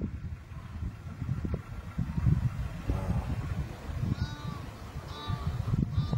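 Steady low rumble with three short animal calls in the second half, each a brief rising-and-falling cry about a second apart.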